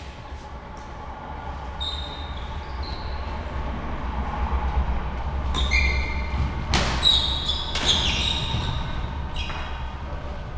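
Badminton rally: rackets strike the shuttlecock with sharp cracks, mostly in the second half, and shoes squeak briefly on the wooden court, over a steady low hum.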